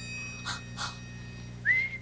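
Two short breathy puffs, then a whistled tune starting near the end with a rising glide into wavering notes. This whistling is the loudest sound. A fading ringing tone trails off at the start.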